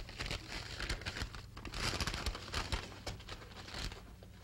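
Old paper rustling and crinkling as it is handled, with items being rummaged about in a wooden chest: irregular crackles that grow louder about two seconds in and again near the end.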